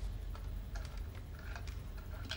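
Light, irregular clicks and taps, a few a second, over a steady low rumble.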